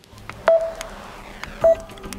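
Samsung Galaxy Tab S7 FE volume key pressed twice, about a second apart. Each press gives a click and a short beep from the tablet's speaker, the volume-change feedback tone.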